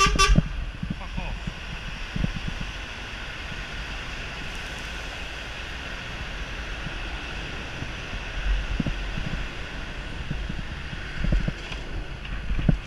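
Steady city traffic noise heard from a moving bicycle: engines and tyres with low wind rumble on the camera microphone. A few sharp knocks and a short tone come at the very start.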